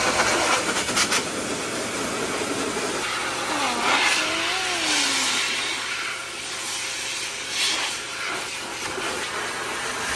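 Electric blower dryer pushing a steady rush of air through its hose and nozzle, blowing water out of a wet dog's coat.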